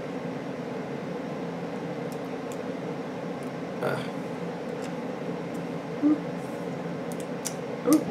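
Steady room hum with a few faint, light clicks of small screws being handled and driven with a precision screwdriver into a laptop motherboard.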